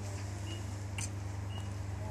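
Open driving-range background: a steady low hum, a short high beep repeating about once a second, and a single sharp click about halfway through.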